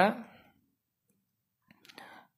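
A couple of faint, quick computer mouse clicks near the end, after a stretch of dead silence, as a link is clicked.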